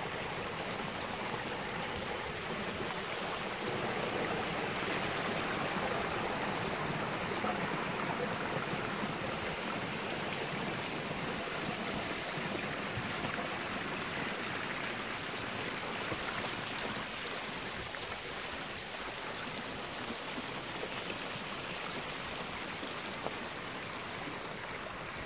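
Water running steadily through a stepped garden channel, spilling over a series of small concrete weirs.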